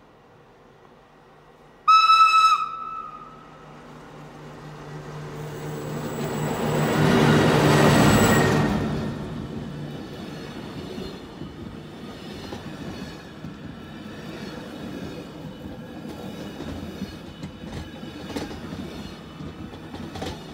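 Matterhorn Gotthard Bahn train with panoramic coaches sounding one short horn blast about two seconds in. It then approaches with a steady hum that grows loudest as the front reaches the microphone, and its coaches roll past with wheel noise on the rails and scattered clicks.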